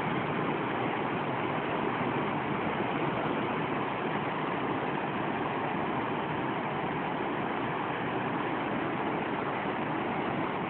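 Water rushing and churning as it pours through the open sluices of a canal lock gate into the chamber below, filling it. The sound is a steady, even rush with no breaks.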